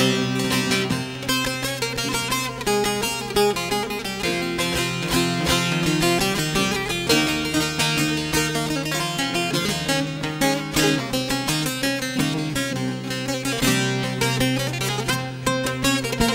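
Several bağlamas (long-necked Turkish saz lutes) playing together in a fast instrumental interlude between sung verses: dense runs of quick plucked notes over a steady low drone.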